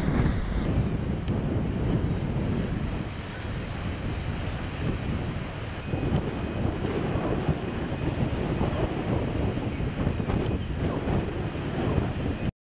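Gusty lodos (southwesterly gale) wind buffeting the microphone over a rough sea, with storm waves churning and breaking against the shore.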